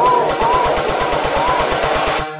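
Electronic dance music build-up: a rapid drum roll under a repeated arching sung or synth phrase.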